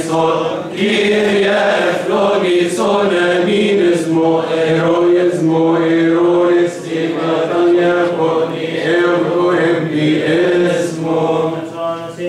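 Coptic Orthodox liturgical chant: a group of voices chanting together in long, held, slowly gliding notes, with barely a break.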